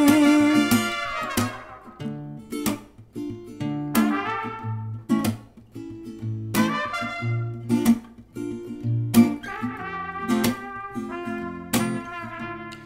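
Instrumental break of a folk-pop song: a strummed acoustic guitar in a steady rhythm, with a trumpet melody over it that opens on a long held note.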